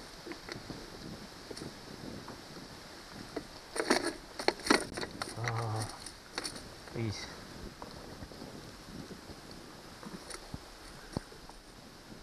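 A fish being unhooked with pliers on a plastic board in a kayak: a cluster of sharp knocks and rattles about four seconds in, then a man's low hum and a short grunt, over a faint wind hiss.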